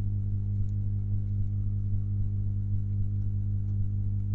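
Steady low electrical hum with a stack of even overtones, unchanging throughout.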